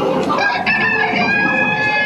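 A rooster crowing in one long, drawn-out call, played through the soundtrack of a dark ride's animatronic scene with figure chickens.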